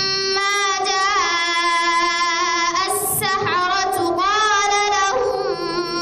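A female reciter chanting the Qur'an in the melodic tajweed style, one long drawn-out line of held notes with wavering ornaments. A brief hissing consonant breaks the line about three seconds in.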